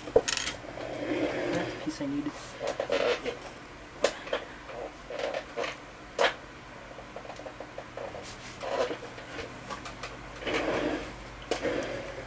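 Hard plastic model-kit parts being handled and pegged together, with scattered sharp clicks and light rattling. The sharpest clicks come just after the start and around four and six seconds in.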